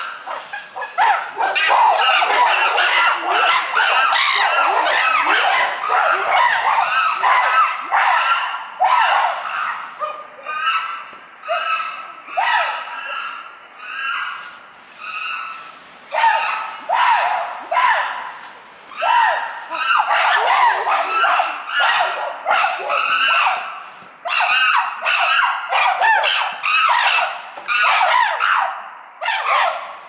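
A group of chimpanzees calling loudly, several voices overlapping in a long run of repeated high calls. From about ten seconds in, the calls break into rhythmic units of about one or two a second, which swell louder again later on.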